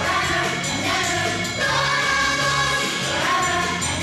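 Children's choir singing a Christmas song over instrumental backing music.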